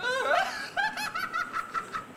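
A person laughing in a quick run of short, high-pitched laughs, several a second.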